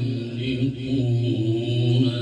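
A man's voice reciting the Quran in melodic tajweed style, holding a long, slightly wavering note.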